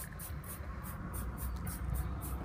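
Trigger spray bottle squirting leather cleaner onto a leather car seat: a rapid run of short hisses, about five a second.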